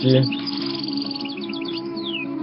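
Small birds chirping in the background: a fast, continuous string of short high chirps, over a faint steady hum.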